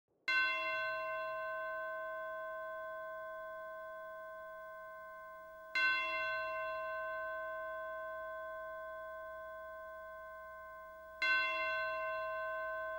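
A bell struck three times on the same note, about five and a half seconds apart, each stroke ringing on and slowly fading before the next.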